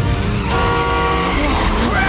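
Action-film trailer sound mix: dramatic music holds a chord for about a second over a loud rush of wind and aircraft engine noise.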